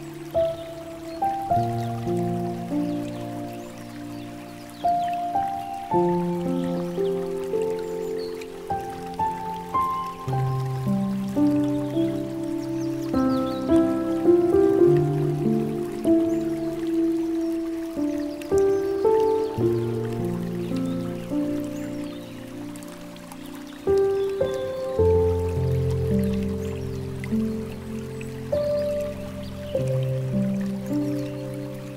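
Slow, gentle solo piano music, single notes and soft chords, over a faint trickle of flowing water.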